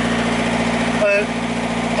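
Inboard BMC 1500 diesel engine of a 30-foot river cruiser running steadily under way: a constant low drone.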